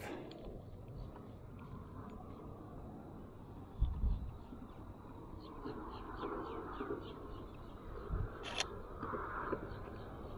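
Faint open-air marsh ambience with a series of short high bird chirps through the middle and later part. A few low knocks and a sharp click come from the tripod and camera being handled.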